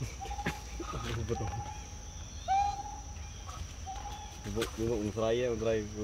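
Baby long-tailed macaque giving four short coo calls, each held on one steady pitch, then a person's voice about four and a half seconds in.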